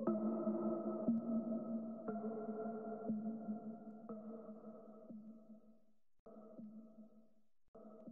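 Music ending: sustained pitched tones with notes changing about once a second, fading out steadily. It cuts out briefly twice near the end.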